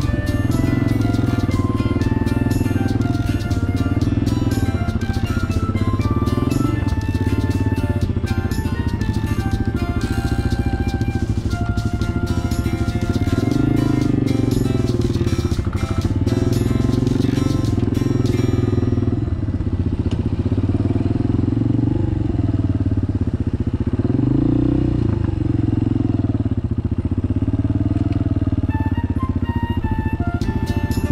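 Honda XLR200R single-cylinder four-stroke engine running at low speed, its note rising and falling with the throttle, under background music. The music drops out about two-thirds of the way in, leaving the engine on its own, and comes back near the end.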